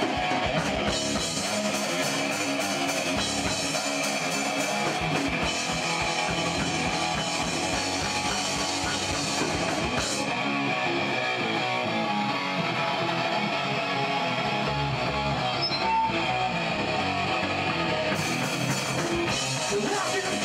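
Live rock band playing: distorted electric guitars and bass over a drum kit, loud and continuous.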